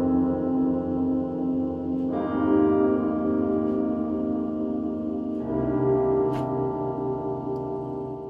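Software piano chords played through the Verbotron reverb (a Gigaverb-based Max for Live device) set fully wet, each chord swelling into a huge, long reverb wash. New chords come in about two seconds and about five and a half seconds in, each ringing on and slowly dying away.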